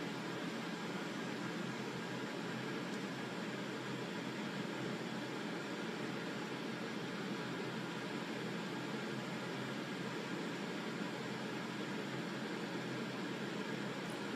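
Steady background hiss with a faint hum, the same throughout, with no distinct sounds in it.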